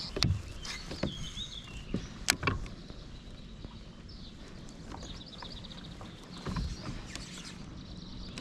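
Quiet lakeside background with a few light clicks and knocks from a baitcasting reel and kayak being handled during a slow retrieve. Birds chirp now and then, with a quick trill about five seconds in.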